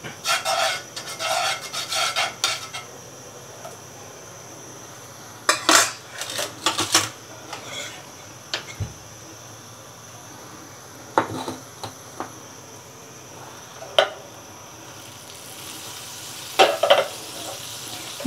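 A thin metal utensil scrapes and clinks against a white nonstick frying pan in several short bursts as it pushes a pat of melting butter around. Near the end the butter begins to sizzle softly in the hot pan.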